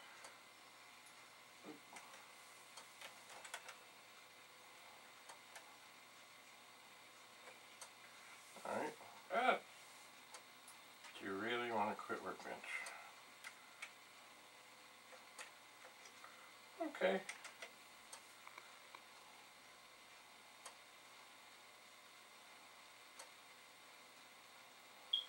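Faint scattered light clicks over a quiet room hum, with a man's voice murmuring briefly a few times, once saying "okay".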